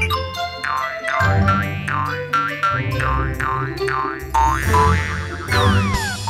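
Bouncy cartoon-style background music with a run of repeated springy boing sound effects, each a quick swoop down and back up in pitch, about two or three a second over a steady bass line; a long falling slide whistle-like glide comes near the end.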